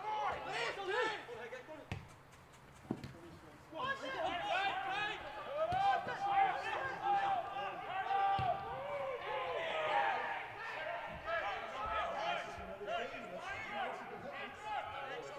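Footballers' voices shouting and calling to one another on the pitch, heard clearly with no crowd in the stands, with a few thuds of the ball being kicked: one at about two seconds, one just before three, and one past eight seconds.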